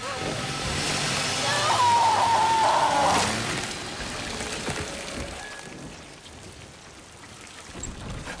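Rain pouring down in a steady hiss, with a person's high, wavering cry lasting about a second and a half, starting about two seconds in. The rain grows quieter after about three seconds.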